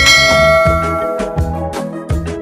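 A single bright bell chime strikes at the start and rings out, fading over about a second and a half, over background music with a steady beat.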